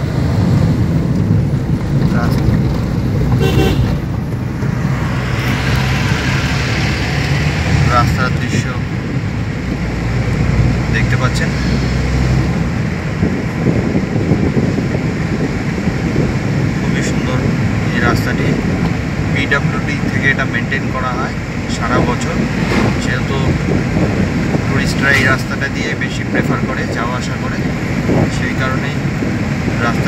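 Inside a moving car's cabin: steady engine and tyre hum on the road. A stronger low drone runs for about the first twelve seconds, and short sharper sounds are scattered through the second half.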